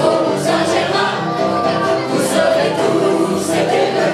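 A small group of women singing a song together in chorus.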